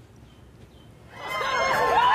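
Near quiet for about a second, then many overlapping voices start up and grow louder, like a crowd.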